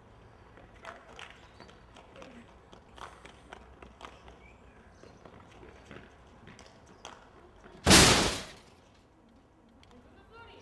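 Footsteps scuffing and crunching on gritty pavement, a scatter of light ticks and scrapes. About eight seconds in, a loud, brief rush of noise lasting about half a second.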